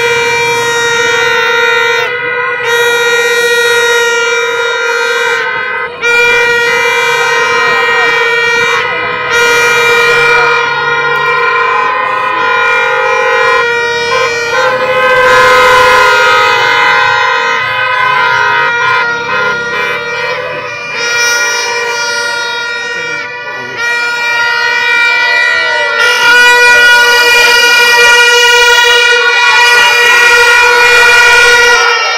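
A loud, sustained horn-like tone held for many seconds at a time with short breaks, over a mix of crowd voices.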